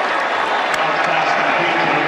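Stadium crowd noise at a college football game: a steady din of many voices after a touchdown.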